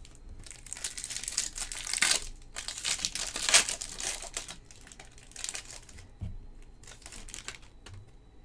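Foil wrapper of a Topps Chrome baseball card pack crinkling and tearing as it is ripped open by hand, loudest in two surges in the first half, then only quieter, shorter rustles as the cards are handled.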